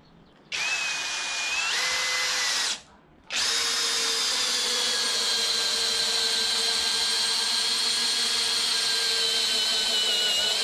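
Skil PWRCORE cordless drill/driver driving a 25 cm screw into a wooden post. There is a short run of about two seconds, a brief pause, then a long unbroken run of about seven seconds, its motor whine slowly dropping in pitch as the screw sinks deeper.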